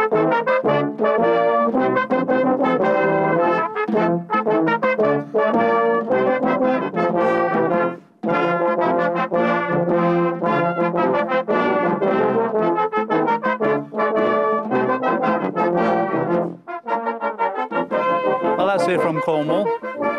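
Brass band of cornets, horns, euphoniums and tubas playing a lively tune in short, rhythmic notes, with a brief break about eight seconds in and a held low note near the end.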